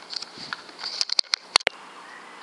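A quick run of sharp clicks and ticks, the loudest two close together about a second and a half in.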